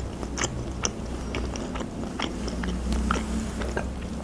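Close-miked chewing of sliced salami: soft, wet mouth clicks and smacks at irregular intervals.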